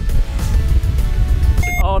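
Strong wind buffeting the microphone in a low, gusting rumble, under background music with steady held notes.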